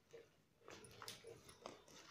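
Faint handling noise of plastic basket-weaving wire strips being worked by hand: soft clicks and rubbing as the strips are pulled and tightened, mostly in the second half.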